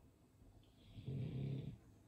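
A man's breathy voiced exhale, a low hum-like sigh lasting under a second, about a second in.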